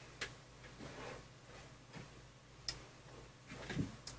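A few scattered sharp clicks with softer knocks between them, the loudest a lower knock near the end, against faint room hum. These are small handling noises of someone moving at a keyboard, not music being played.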